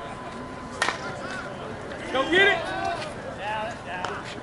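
One sharp crack of a slowpitch softball bat hitting the ball, a little under a second in, followed by players shouting, loudest about halfway through.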